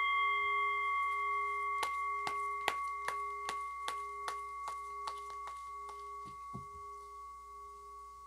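A single struck metal chime rings with several steady overtones and fades slowly. Over it, a deck of tarot cards being handled and shuffled gives a run of sharp clicks, two or three a second, then a soft low thud near the end.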